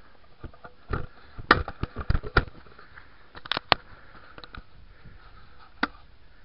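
A series of sharp, irregular knocks and scuffs, clustered in the first couple of seconds, with a few more around the middle and a single one just before the end.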